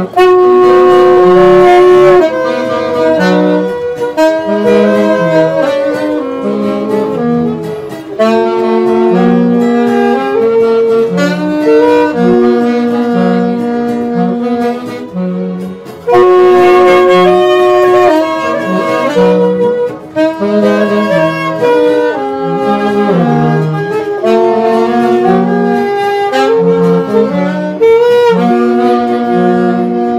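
Saxophone group of three alto saxophones playing a melody in unison, backed by an electronic keyboard and guitar. The melody runs in held notes, and the same phrase seems to start over about halfway through.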